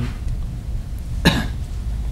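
A single short cough from a man at the microphone, about a second in, over a steady low hum.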